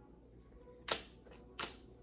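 Two sharp snaps of tarot cards being flipped and laid down on a table, about two-thirds of a second apart.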